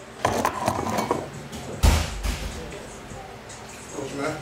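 Camera handling noise as it is moved and set down on a wooden cabinet: rustling and light knocks for about the first second, then one heavy thump about two seconds in.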